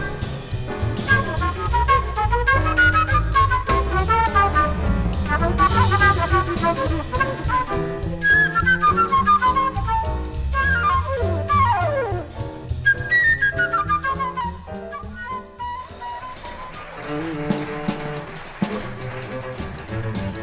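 Live jazz: a flute plays fast, running melodic lines over double bass and drum kit. About four seconds from the end the busy playing drops away and a bowed double bass takes over with slower, sustained notes.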